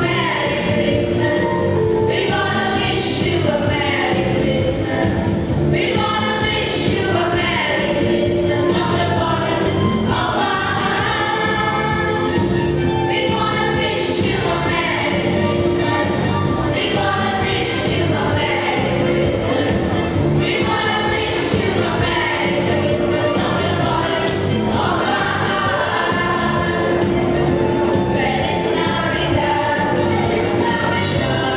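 A young choir singing together into stage microphones, with instrumental accompaniment running steadily under the voices.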